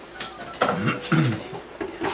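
Light clinks and taps of painting tools, with a short stretch of voice partway through.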